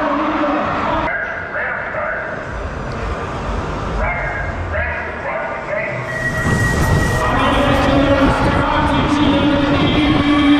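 Arena noise at a BMX start gate: a voice over the loudspeakers, then a single steady tone held for about a second a little past the middle, the start signal. After it the noise swells as the crowd cheers and the bike rolls down the start hill.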